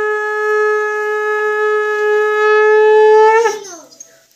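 Conch shell (shankha) blown in one long, steady note. The note wavers and breaks off about three and a half seconds in.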